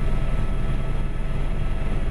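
Steady, loud drone of an aircraft in flight heard from inside the cockpit: a constant rush of engine and air noise with a few steady tones running through it.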